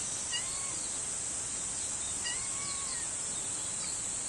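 Small kitten meowing twice, short high calls that rise and fall, the second longer than the first.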